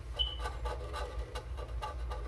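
Fine-tipped pens scratching on paper in short, irregular strokes as two drawings are inked, over a steady low hum. A brief high squeak sounds near the start.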